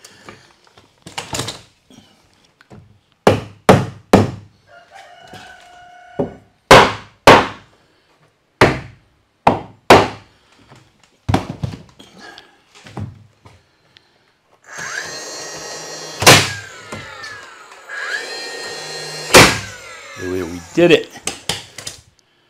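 Pine tongue-and-groove board being knocked and worked into place around an outlet box: a long run of sharp wooden knocks, then a few seconds of wood rubbing and creaking against wood in two stretches, about fifteen and eighteen seconds in.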